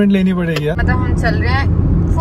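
Steady road and engine noise inside the cabin of a moving car on a highway, starting suddenly under a second in, with a voice talking over it.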